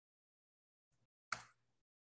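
Two computer keyboard keystrokes over near silence: a faint one about a second in, then a louder, sharper one a moment later.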